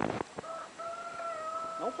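A rooster crowing: a short opening note, then one long, level held note. A brief noisy scuffle sounds at the very start.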